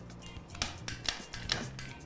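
A quick series of light, sharp clicks and taps at a gas stove where a frying pan sits on the burner, over faint background music.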